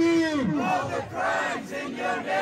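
Protest call-and-response chant. A man's voice through a portable PA speaker holds out the last word of a slogan, falling off about half a second in, and then a crowd of many voices chants the reply back.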